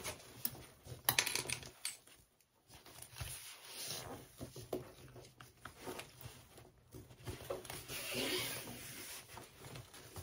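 Hands folding and pinching binding over the edges of lilac waterproof canvas: irregular rustling, crinkling and small clicks of the stiff fabric being handled. There is a louder rustle about a second in, a short lull, and a longer rustle near the end.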